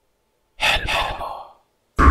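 A single breathy, whispered word from a voice, lasting about a second, starting about half a second in.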